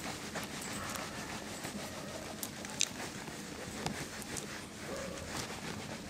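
Hand-held eraser wiping marker off a whiteboard: continuous scrubbing with quick back-and-forth strokes, and one brief sharp tick about three seconds in.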